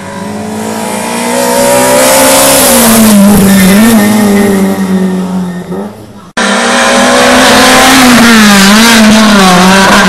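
Hillclimb race car engines at high revs, loud and close. The first car's note builds and rises, then drops and wavers as it shifts through the gears. The sound cuts off suddenly about six seconds in to a second run at full throttle, its pitch wavering near the end.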